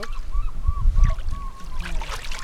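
A run of short honking bird calls, about three a second, each a brief rise and fall in pitch, over low rumbling noise.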